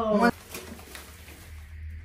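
A voice calling out briefly at the very start and cutting off, then low room sound with a faint steady low hum.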